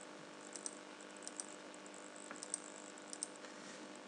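Faint computer mouse clicks, often in quick pairs about once a second, over a low steady hum.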